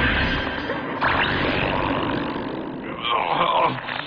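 Dramatic background music and sound effects from an anime battle, with a man crying out in pain near the end.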